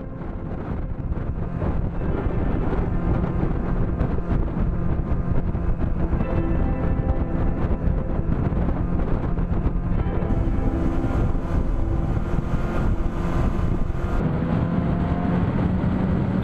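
Outboard motor running at a steady speed, a constant drone driving an inflatable boat along the water.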